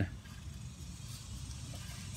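Faint steady background noise with a low rumble; no distinct sound stands out.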